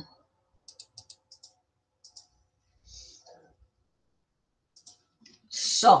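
A handful of light computer clicks in quick pairs over about the first two seconds, a short soft hiss about three seconds in, and two more clicks shortly before a spoken word at the end.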